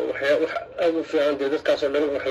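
Speech only: a woman's voice talking continuously.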